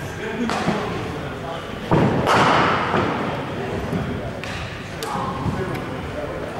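One sharp thud about two seconds in, ringing on for about a second in a large indoor sports hall, over a background of indistinct voices in the cricket nets.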